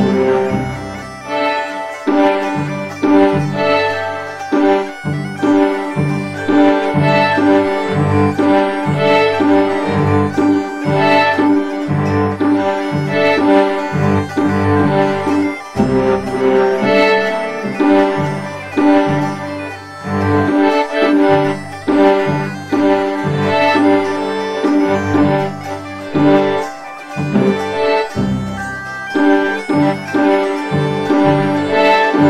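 Bagpipe playing a tune over a steady drone, accompanied by a plucked lute-like string instrument keeping a regular rhythm.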